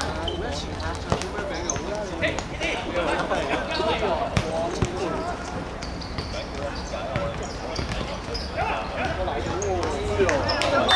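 Players' voices calling across an outdoor futsal court, with a few sharp thuds of the ball being kicked and bouncing on the hard court surface, the clearest about four to five seconds in.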